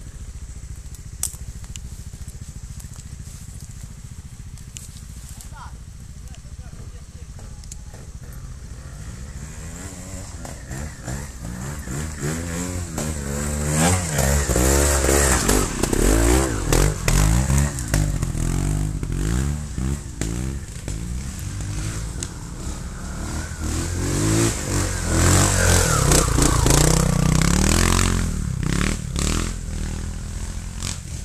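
Trials motorcycle engine running at a low idle, then revved up and down in repeated throttle blips through most of the second half, loudest around the middle and again near the end.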